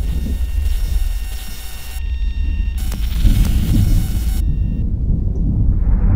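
Deep, steady storm rumble like distant thunder, overlaid with harsh bursts of digital static that cut in and out abruptly: a glitch sound effect as the picture breaks up.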